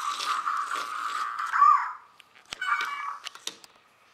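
Novie robot toy making electronic sounds through its small speaker: a buzzy, crackly sound for about two seconds that ends in a short warbling tone, then a few sharp clicks and a brief beep a little after the halfway point.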